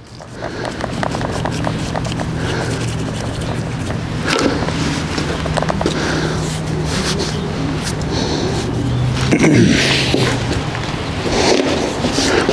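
Continuous rubbing and scraping as a stiff, freshly oiled leather latigo is worked with a rag and dragged across concrete. A steady low hum runs underneath and fades out about ten seconds in.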